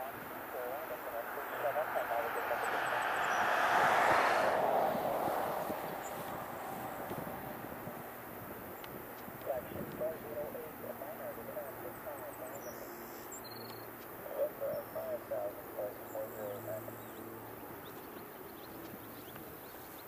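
Boeing 767-200's twin jet engines at takeoff thrust: a roar that swells to its loudest about four seconds in, then slowly fades as the airliner climbs away.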